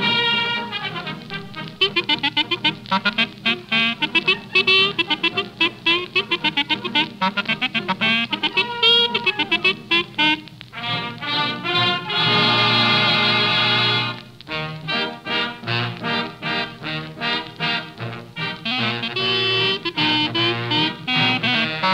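Radio studio band playing a fast, brass-led passage of quick running notes, with a loud held chord about twelve seconds in before the fast playing resumes.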